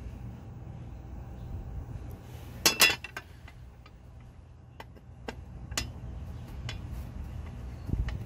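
Light metallic clinks and ticks as a truck's engine computer board and its aluminium case are handled and worked on during contact cleaning: a short clatter a little under three seconds in, then a few scattered single ticks, over a low steady rumble.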